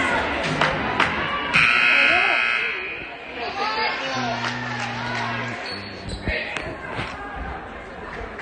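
Gymnasium scoreboard horn sounding once for over a second, about a second and a half in, as a timeout ends. Basketballs bounce and voices chatter in the hall around it, and a lower steady hum sounds for about a second and a half around four seconds in.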